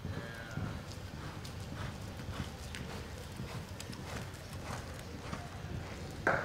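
A ridden horse's hoofbeats on the dirt footing of an arena: a series of short, unevenly spaced thuds and clicks as it moves through a reining pattern.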